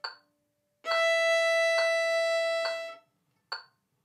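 A violin bowing one long, steady note, a held high note played with straight bow strokes, that stops after about two seconds. Short metronome clicks keep a steady beat of about 69 a minute throughout, heard alone before and after the note.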